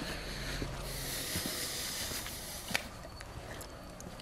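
A steady hiss of background noise, with one sharp click a little before three seconds in.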